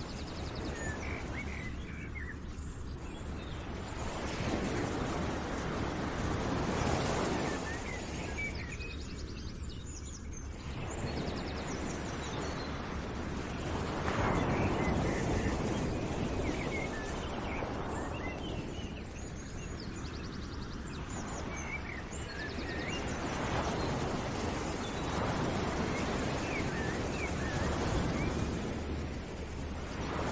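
Background nature ambience: a rushing noise that swells and fades every few seconds, with small bird chirps over it.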